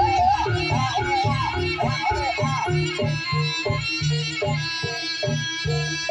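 Live jaranan ensemble music. For the first half a high, wavering melody line runs over drum strokes. After that the melody drops away, leaving an even rhythm of hand-drum strokes and ringing metallophone notes.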